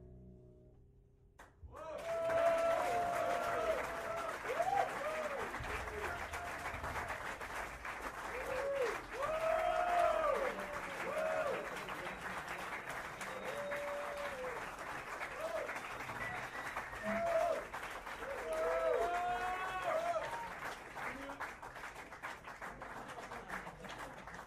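The last note of a tune fades out, then an audience breaks into applause about two seconds in, with whoops and cheers rising and falling over the clapping.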